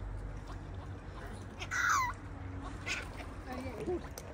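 Waterbirds calling around a feeding spot, with one loud call that falls in pitch about two seconds in and a few shorter calls near the end.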